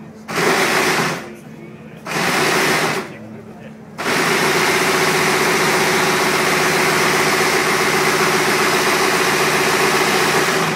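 2011 Mercedes GP Formula 1 car's 2.4-litre V8 being started: three short loud bursts about a second apart, then from about four seconds in it runs steadily and loudly at a high idle.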